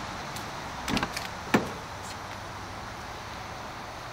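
Honda S2000 car door being opened: a quick cluster of clicks from the handle and latch about a second in, then one sharp latch clack just after.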